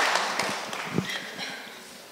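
Audience applause dying away over about two seconds, thinning to a few scattered claps and knocks.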